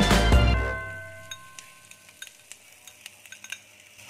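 Background music fading out within the first second, then a few faint, light clinks of a cup and utensil against a steel wok as crumbled salted egg is tipped in.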